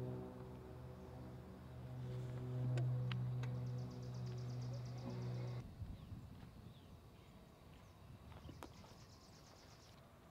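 A small engine running with a steady low hum that cuts off abruptly about five and a half seconds in. After it comes quieter open-air ambience with a high buzzing trill and a sharp click near the end.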